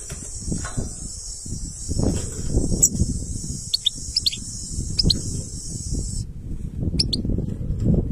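A caged European goldfinch gives short, sharp call notes, several in quick pairs around four to five seconds in and again near seven seconds. They sound over a steady high buzzing that cuts off suddenly about six seconds in, and a louder low rumbling noise on the microphone.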